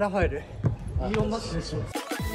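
A man's voice speaking in an echoing gym hall, with two sharp knocks about a second in. Music starts right at the end.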